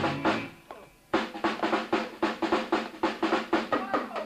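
Live rock drum kit: the band's music breaks off for a moment, then the drums come back in with a run of fast, even strikes, about five or six a second.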